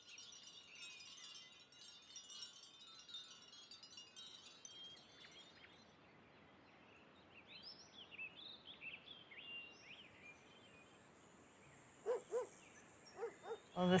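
Faint woodland ambience: scattered high notes at first, then birds chirping in short rising and falling calls from about halfway. A steady high insect buzz sets in about ten seconds in.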